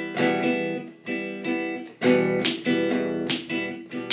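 Acoustic guitar strummed with the fingers: about five or six strums of one chord in an uneven down-and-up rhythm pattern, each ringing on into the next.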